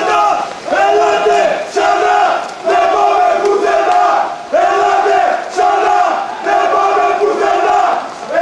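Football supporters chanting together in the stand, a loud rhythmic chant of many voices repeated in short phrases with brief breaks every second or two.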